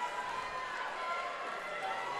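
Faint, even background noise of an indoor fight venue: low crowd sound with a few weak voices, no clear single event.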